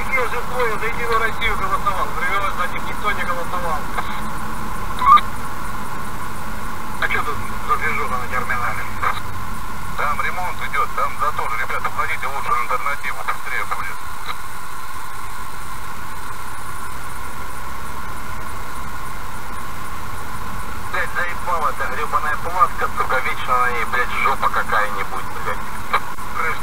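Muffled, indistinct talking in a car cabin over low road and engine noise while driving, with one short sharp knock about five seconds in.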